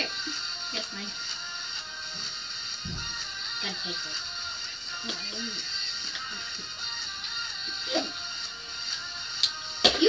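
A song playing steadily as background music, with faint voices under it.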